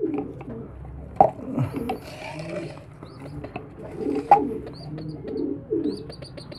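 Domestic pigeons cooing steadily, with two sharp clicks about a second and about four seconds in.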